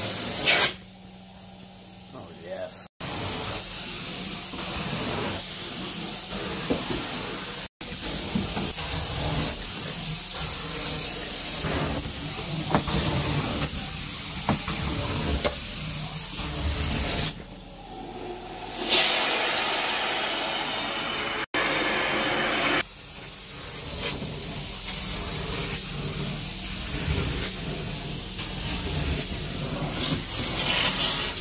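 Carpet-cleaning extraction wand spraying water into the carpet and sucking it back up: a loud, steady hiss of vacuum airflow. It is broken by a few abrupt cuts and dips twice to a lower level for a second or two.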